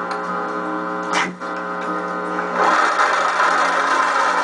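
Sewing machine starting to stitch about two and a half seconds in and running on steadily, over background guitar music. A brief click about a second in.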